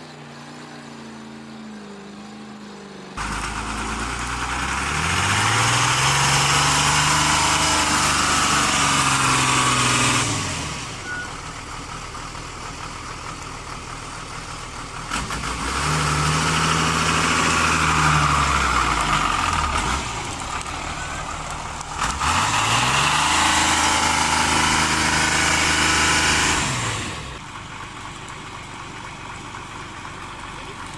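Heavy six-wheel truck engine revving hard three times under load, the pitch climbing and holding high before dropping back to idle between surges, as the truck labours through deep mud.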